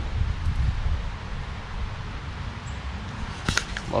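Wind on the microphone: an uneven low rumble with a steady hiss of wind in the trees above it. One sharp click comes near the end.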